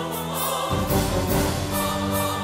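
Dramatic background music of sustained choir-like chords, the chord shifting lower about two-thirds of a second in and changing again near the end.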